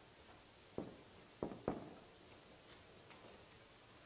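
Faint, short taps of a marker on a whiteboard while an item is written: three quick clicks in the first two seconds, then a couple of fainter ones.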